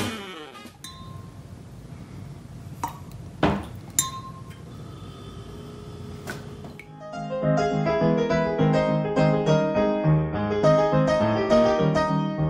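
A handful of sharp clinks of a long straw knocking against drinking glasses over quiet room tone, then solo piano music starts about seven seconds in.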